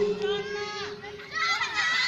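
Children's voices chattering, with a steady tone underneath that fades out about a second and a half in.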